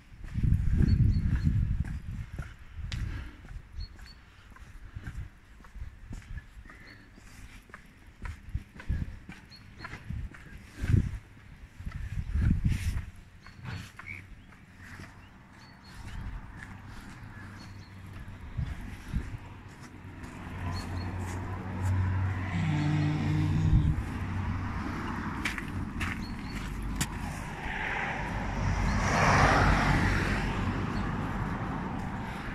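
Outdoor street sound with irregular low thumps and rumbles of wind and handling on the microphone. In the last third a motor vehicle's engine builds up and passes, loudest near the end.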